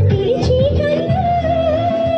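A woman sings a song into a microphone through the PA over amplified backing music with a steady beat. About a second in she holds a long, wavering note.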